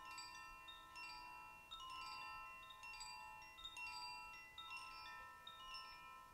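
Koshi wind chime, a bamboo tube with tuned metal rods inside, swung gently by hand: soft, irregular strikes of several clear high tones that ring on and overlap.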